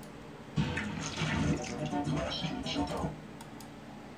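Playback of a video preview through computer speakers: a stretch of mixed music and voice with a rushing noise, from about half a second in until about three seconds in.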